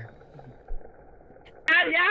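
Faint low background noise, then a sharp click and a person's loud, excited voice starting near the end.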